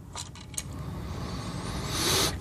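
Plastic housing of a small plug-in ionic air purifier being pulled apart by hand. There are a few light clicks, then a rubbing, scraping noise of plastic parts sliding apart that grows louder toward the end.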